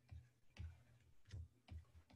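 Faint, irregular clicks and light taps of a stylus on a drawing tablet as handwriting is written, about four in two seconds.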